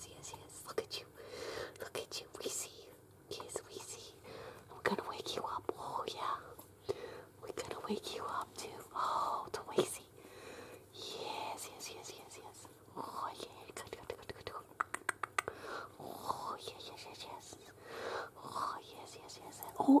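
A person whispering softly and intermittently, with light clicks and rustling from a hand stroking newborn puppies on fleece bedding.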